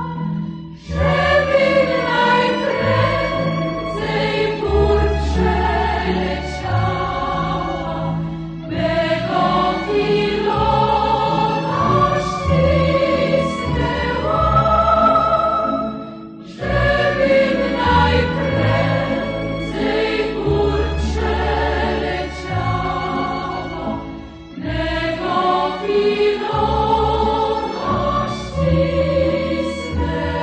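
Background choral music: a choir singing in long phrases of about eight seconds, with brief breaks between them.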